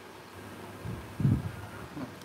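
Hands pressing and working lumps of wet clay onto the side of a leather-hard clay vase, giving soft, dull thuds, the loudest just past a second in.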